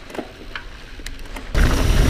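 Mountain bike rolling down a dirt trail, with faint tyre noise and a few light clicks and rattles. About one and a half seconds in, a loud low rumble of wind on the camera's microphone cuts in as the bike descends at speed.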